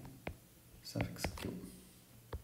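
Plastic stylus tip tapping on a tablet's glass screen while writing, a few sharp clicks, with a brief quiet murmur of voice about a second in.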